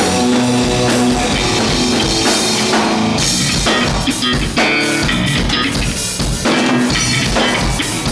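Rock band playing live, an instrumental passage: drum kit with regular kick and cymbal strokes under electric guitars, bass and keyboards, with a violin playing over them.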